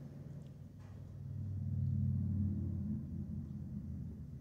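A low rumble that swells to its loudest around the middle and fades toward the end, with a couple of faint light ticks in the first second.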